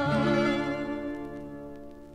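Fado guitar ensemble of Portuguese guitars holding the song's final chord, which rings on and fades away, with faint vinyl surface clicks showing through near the end.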